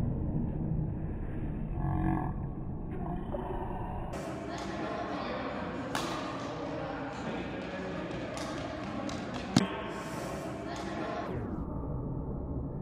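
Slowed-down sound of slow-motion sports-hall footage: low, drawn-out, indistinct sounds for the first few seconds, then a hiss of hall noise with scattered knocks from about four seconds in. A sharp knock comes a bit after nine seconds, and the hiss cuts off suddenly near the end.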